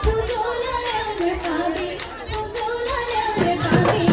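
Live Assamese Bihu folk music: a sung melody over drumming, with heavier drum strokes coming in near the end.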